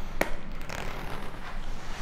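Neoprene wetsuit being handled and zipped up at the leg: rubbing and rustling of the thick suit material, with one sharp click about a quarter of a second in.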